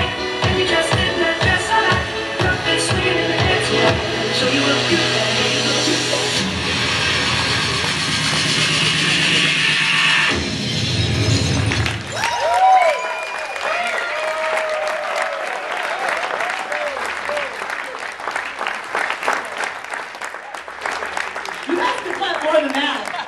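Dance music with a steady beat, about two beats a second, swells into a held final chord that ends about ten seconds in. Audience applause and cheering with whoops follow.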